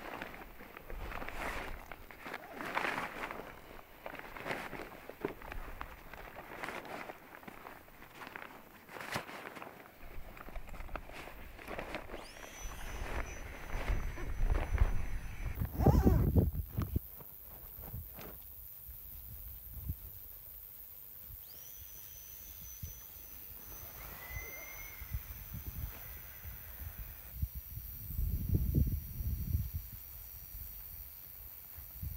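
Rustling and crinkling of nylon packraft fabric and a dry bag as gear is packed into an Alpacka Caribou packraft, with irregular handling knocks through the first half. A louder dull burst comes about halfway through and another near the end.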